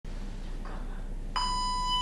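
A single steady, high-pitched electronic beep that starts suddenly about two-thirds of the way in and holds for just under a second, over a faint low hum.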